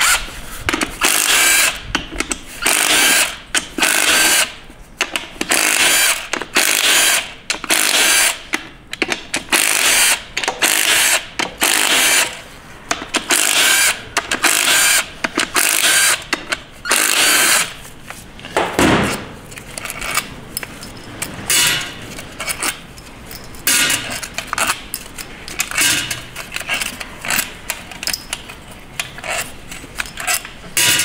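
Cordless power tool run in repeated short bursts, over a dozen times, backing out the front pump bolts in the bell housing of a 6R80 automatic transmission.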